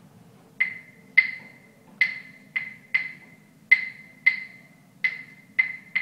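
Claves struck in the rumba clave rhythm: about ten sharp, bright wooden clicks, two rounds of the five-stroke pattern with its uneven spacing and the delayed third stroke.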